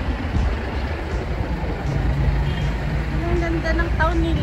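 Town-street ambience: a steady low rumble of road traffic, with a low engine hum in the middle and a voice briefly near the end.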